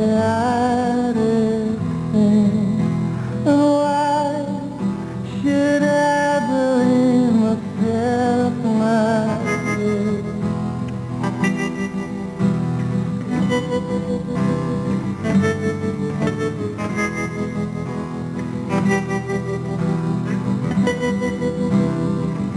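Live acoustic rock performance: a man's lead vocal over acoustic guitars for the first nine seconds or so, after which the singing drops out and the acoustic guitars play on.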